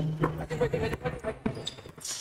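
Basketball bouncing on an indoor gym court floor: a run of sharp knocks as a player dribbles, with faint voices in the hall.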